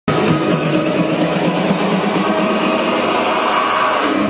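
Loud electronic dance music from a live DJ set, recorded on a phone in the crowd, in a build-up: a dense hissing wash fills the top with the bass cut away.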